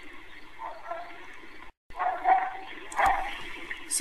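Faint, indistinct voice sounds over an online-meeting audio line. The audio cuts out completely for a moment just before the middle.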